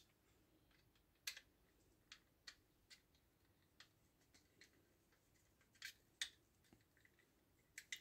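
Near silence broken by a few faint, scattered clicks of a small screwdriver and screw working against hard red plastic model parts, with the clearest clicks about a second in and again near six seconds.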